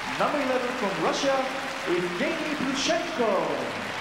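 An announcer's voice over the arena's public-address system introducing the skater, with crowd applause underneath.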